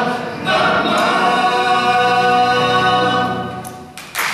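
Male a cappella choir singing: after a short break about half a second in, the voices take a final chord, hold it, and let it fade away near the end.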